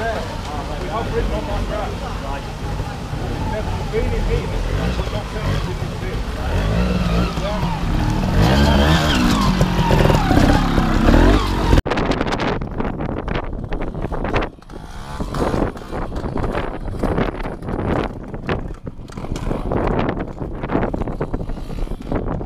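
Trials motorcycle engines running and revving as riders climb a rocky stream section, the pitch rising and falling several times. About twelve seconds in, the sound cuts to gusty wind buffeting the microphone on open ground.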